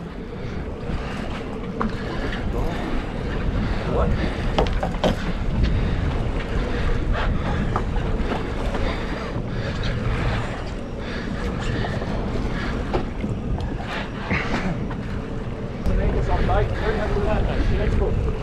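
Wind buffeting the microphone over water sloshing against a small boat, with scattered short clicks and knocks from rod and reel while a tuna is fought to the boat; the wind noise grows louder near the end.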